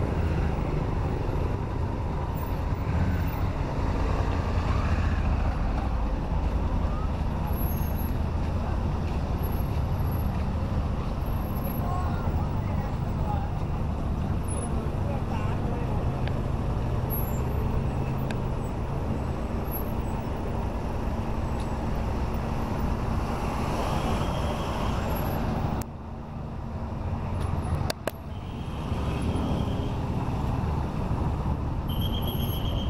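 Engine rumble and road noise from a vehicle in slow-moving city traffic, with the surrounding cars and motorbikes, steady throughout except for a brief dip in level about four seconds before the end.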